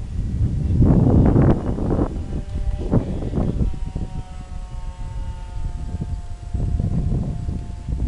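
Twin brushless electric motors with three-blade propellers on a radio-controlled ATR 72-600 scale model, heard as a faint steady hum from high overhead that slowly falls in pitch in the second half. Heavy wind buffeting on the microphone is the loudest sound, strongest about a second in and again near the end.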